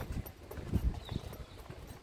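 Irregular clopping knocks, a few each second, on a hard street surface.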